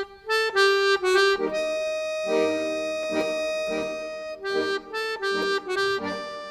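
Accordion music: a few short notes, then a long held chord through the middle, then short notes again.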